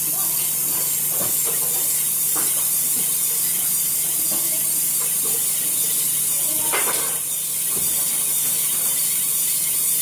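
Steady high hiss over a low, even hum, with a few faint knocks and rattles, the clearest about seven seconds in.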